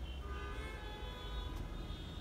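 A steady low rumble inside a parked car's cabin, with faint sustained musical notes held above it.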